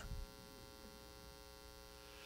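Faint, steady electrical mains hum: a low buzz made of many even overtones, just above room tone.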